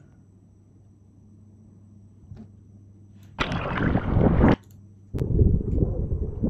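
Water sloshing and splashing around a GoPro held at the surface of shallow sea water: faint lapping at first, then a splash lasting about a second, then a duller, muffled rush of water near the end.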